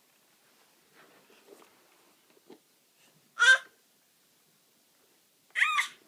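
A baby's two short, high-pitched squeals, one about halfway through and one near the end, after a faint rustle and a small tap.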